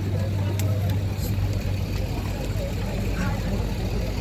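A nearby vehicle engine idling: a steady low hum, loudest for the first second and a half, under the faint chatter of a street crowd.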